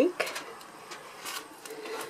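Light rustling and a few soft clicks and knocks from hands and camera moving in a wooden nesting box lined with wood shavings.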